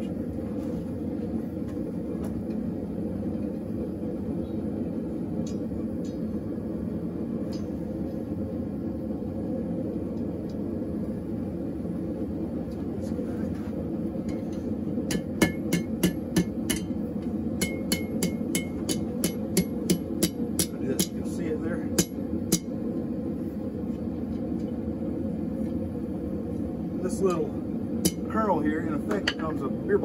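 A forge running with a steady low rushing noise. Partway through comes a run of about twenty hammer blows on hot steel bar stock against the anvil, roughly three a second, each strike ringing.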